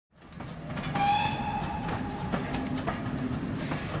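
Train passing with a steady rumble and clicking of wheels over rail joints, fading in at the start, with a short whistle about a second in.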